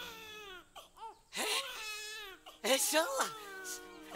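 Newborn baby crying, a run of wavering wails that is loudest in two long cries through the middle: the first cries of an infant just born.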